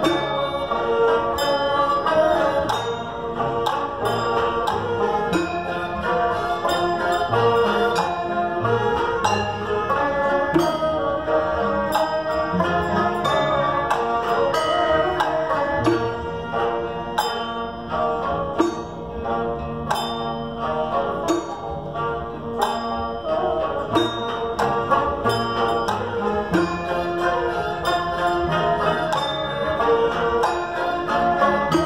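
Naxi traditional ensemble playing a melody on bowed fiddles, plucked lutes and a long zither, with light percussion strokes marking a steady beat.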